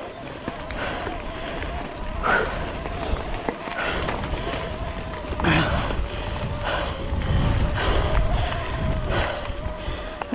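A mountain bike rolling over a loose gravel track: tyre crunch and rattle from the bike, with rumbling wind on the camera microphone that builds in the second half. A few sharper knocks come over bumps, and a thin steady whine runs underneath.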